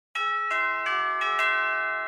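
A short chime jingle: four or five bell-like notes struck about three a second, each ringing on, then the chord fades away.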